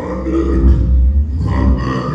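Amplified banjo played live, under a loud, deep growling sound.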